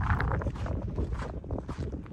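Wind buffeting the microphone: an uneven low rumble with a few faint ticks.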